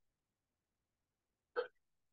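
Near silence, broken about one and a half seconds in by a single short vocal sound from a person.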